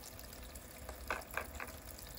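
Battery-powered Spark Create Imagine toy sink faucet pouring a thin stream of water into the plastic basin, a steady trickle. Three brief sharp sounds come a little past a second in.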